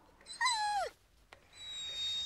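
A cat meows once, a short call falling in pitch. It is followed by a thin, steady high-pitched tone that lasts about a second.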